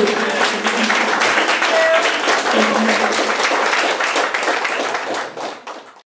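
Audience applauding at the end of a song, with a few voices calling out over the clapping; the sound fades out near the end.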